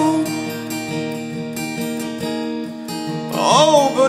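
Acoustic guitar strumming sustained chords in an instrumental break of a song; a male voice comes back in singing near the end.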